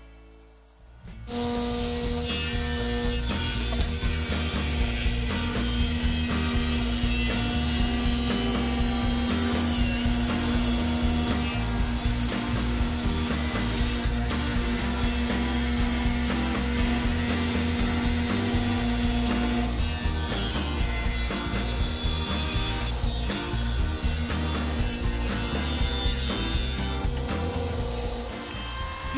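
Table saw running and cutting through a thick wooden leg blank: a loud, steady saw noise that starts about a second in, with a steady hum under it that drops out about two-thirds of the way through.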